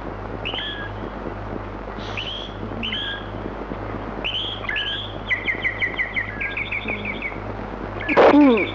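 Bird calls: a string of short rising chirps, then a fast trill of repeated notes from about five to seven seconds in, over a steady low hum.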